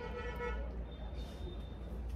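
A faint pitched honk for about the first half second, then a thin high tone in the second half, over a steady low hum.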